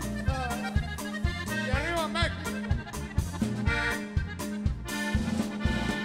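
Norteño band playing an instrumental accordion passage between verses: a Gabbanelli button accordion carries an ornamented lead melody over a steady, bouncing bass and drum beat.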